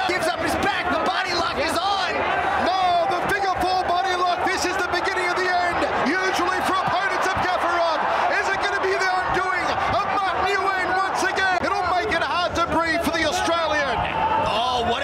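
Arena crowd of many voices yelling and cheering steadily at an MMA fight, with frequent sharp slaps or knocks scattered through.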